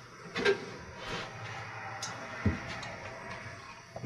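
Soft handling noises as the power venter's safety switch is picked up: a light knock about half a second in and a dull thump about two and a half seconds in.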